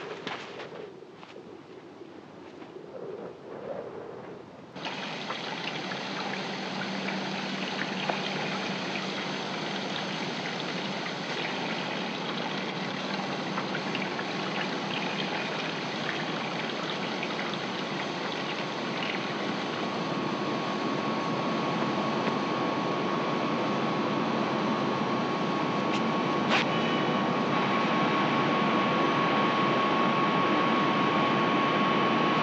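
Steady rushing noise of large industrial machinery, as in a power plant, starting suddenly about five seconds in and slowly growing louder, with a low hum through the middle and a thin steady high whine near the end.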